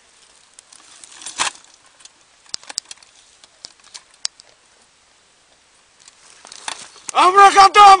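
Rustling of dry brush and scattered light clicks as a bipod-mounted belt-fed machine gun is handled, then a man's loud yell in the last second.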